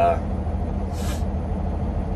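Peterbilt 389's diesel engine idling steadily, heard inside the cab, with a short hiss about a second in.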